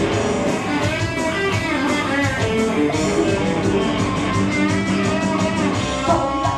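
Electric guitar played live through an amplifier: an instrumental passage of strummed chords in a steady rhythm, with no singing.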